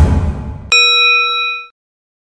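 A bright bell-like ding, the notification-bell sound effect of a subscribe end card, strikes about 0.7 s in and rings for about a second before cutting off. Before it, a loud low rushing noise from a transition effect fades out.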